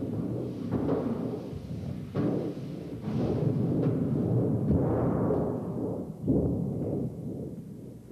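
The Metalkonk, a large sheet of rusted steel hung on piano wire, played by several people's hands and fingers: a low, rumbling, thunder-sheet-like boom with a wavering ring, renewed by fresh strokes about one, two, three and six seconds in, and fading near the end.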